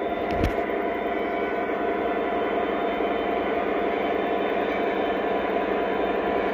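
Lionel O scale diesel locomotive's onboard sound system playing a steady diesel engine drone as the model rolls along the track, with a brief thump about half a second in.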